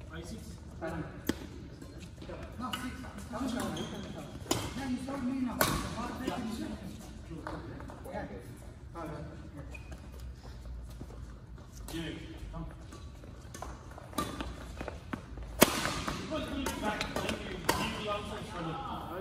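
Badminton rackets striking a shuttlecock, heard as sharp single cracks every few seconds, the loudest late on, over indistinct talk from players.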